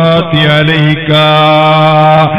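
A man's voice chanting in drawn-out melodic phrases, in the intoned style of a Malayalam Islamic sermon. A short phrase is followed, about a second in, by one long held note.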